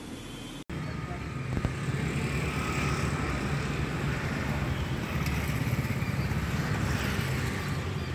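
Steady low outdoor background rumble. It starts abruptly at an edit just under a second in.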